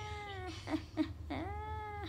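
Cat meowing: two long drawn-out meows, the second starting just past the middle, with a couple of short chirps between them.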